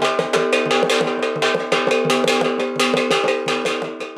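Gongs and a drum beaten in a fast, even rhythm for a traditional dance, the gongs ringing on at steady pitches under the strikes.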